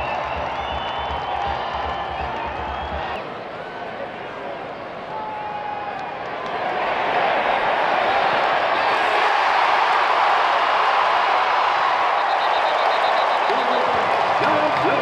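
Stadium crowd noise with scattered voices, swelling about halfway through into loud, sustained cheering.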